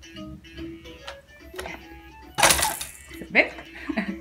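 Quiet background music. About two and a half seconds in, a brief loud rattling clatter from a baby's plastic activity-tray toy being handled.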